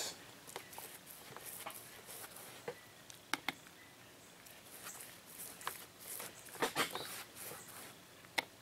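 Chip brush spreading fiberglass resin onto fleece fabric: quiet, soft brushing and dabbing strokes, with a few sharp taps scattered through.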